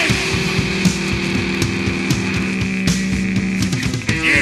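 Punk rock band playing an instrumental stretch without vocals: distorted guitar chords held over bass and steadily hit drums.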